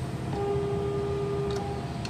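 A single steady note held on an 1857 Hill and Son pipe organ, sounded on the Great's diapason stops, starting about a third of a second in and released just before the end.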